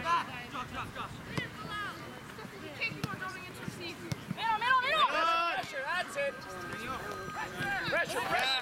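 Shouting and calling voices of players and spectators at a soccer game, with a loud burst of several overlapping high-pitched yells about halfway through.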